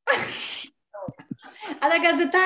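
Women laughing over a video call: a sharp breathy burst at the start, then short voiced laughs running into a woman's voice near the end.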